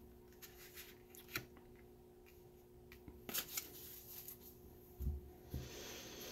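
Quiet handling of tarot cards on a cloth-covered table: scattered soft clicks and taps as a card is laid down and the deck is picked up, with a low bump about five seconds in. A faint steady hum sits underneath.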